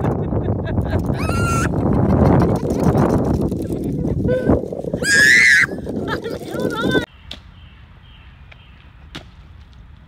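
Strong wind rumbling on the microphone, with a young girl's high-pitched screams, a short one about a second in and a louder, longer one about five seconds in, and laughter. The wind noise stops abruptly at about seven seconds, leaving a quiet background.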